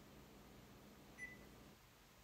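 One short, high beep from the control panel of a Frigidaire Gallery microwave, about a second in. The rest is near silence.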